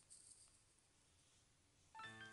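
Near silence: room tone, with a few faint brief rustles in the first half second.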